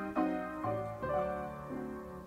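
Background piano music: notes and chords struck about every half second, each fading before the next.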